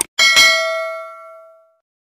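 Notification-bell sound effect of a subscribe animation: a short click, then a bell struck twice in quick succession, ringing and fading out over about a second and a half.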